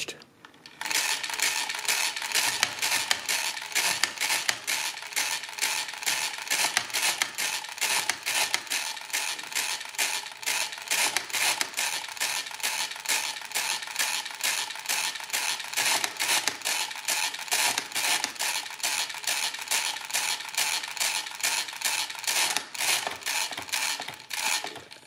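Hamann Manus E mechanical calculator being cranked through an automatic division: a steady run of metallic clicks and clatter from its gears and stepping carriage, about two to three a second. It starts about a second in and stops just before the end, when the division is finished.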